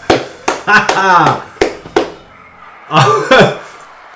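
A man laughing and exclaiming in short bursts, with a few sharp smacks in the first two seconds.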